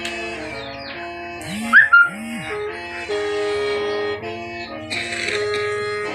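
A Hmong qeej (bamboo free-reed mouth organ) played with several reed pipes sounding together, holding steady chords that shift in quick steps, in a test of the instrument under repair. About two seconds in, two short loud yelps cut across it.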